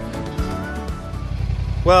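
Background music that ends about a second in, giving way to a motorcycle engine running steadily on the road.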